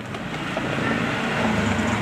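A motor vehicle passing, its steady engine-and-road noise growing gradually louder.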